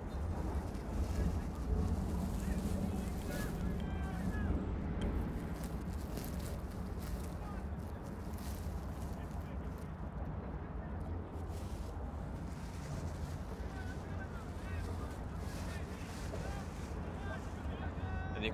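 Faint, distant shouts from soccer players over a steady low rumble of outdoor background noise.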